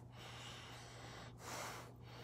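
A man sniffing an unlit cigar held under his nose: a long, faint breath in through the nose, then a shorter second sniff about a second and a half in.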